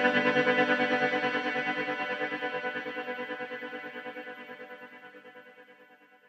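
An electric guitar chord ringing out through a regular spring reverb and a modulated shimmer reverb, fading slowly to nothing over about six seconds. The tail wavers quickly and evenly in level as it dies away.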